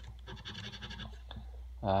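A coin scraping the scratch-off coating off a lottery ticket on a wooden table in quick, repeated short strokes.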